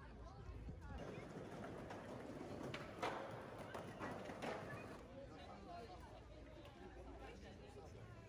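Background voices of people outdoors, with several sharp knocks or clacks about three to four and a half seconds in, the loudest near three seconds.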